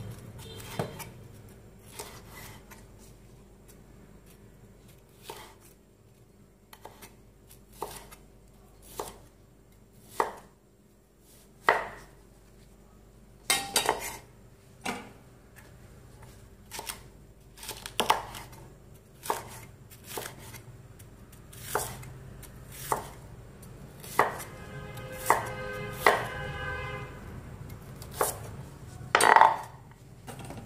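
Kitchen knife slicing through crisp leafy green stalks on a wooden cutting board: single cuts landing about once a second in an uneven rhythm. A brief ringing clink comes late on, and the loudest knock falls near the end.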